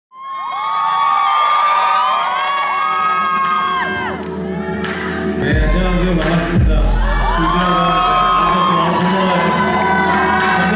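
Audience cheering and whooping at an outdoor concert as the band begins its first song. About five and a half seconds in, bass and drums come in under the cheers.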